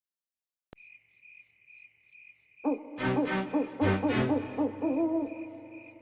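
Spooky background music starting after a silence: a steady pulsing high chirp like crickets, then from a little over two seconds in, wavering hoot-like tones over a few drum hits.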